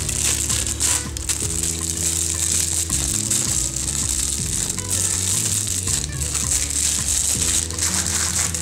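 Clear plastic packaging of a makeup brush set crinkling and rustling as it is handled and unwrapped, with background music underneath.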